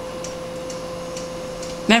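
A few faint, short clicks, about four in two seconds, as a BIOS menu on a computer is stepped through, over a steady low hum with a constant tone.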